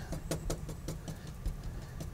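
Oil paint being mixed on a palette: a quick, irregular run of light taps and clicks over a low steady hum.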